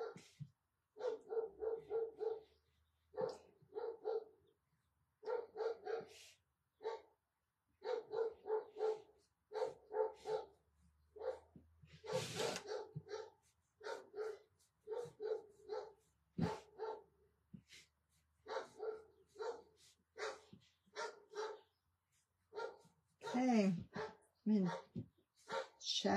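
A dog barking over and over in quick runs of short, same-pitched yaps, quieter than the talk around it. A brief rustle about halfway through.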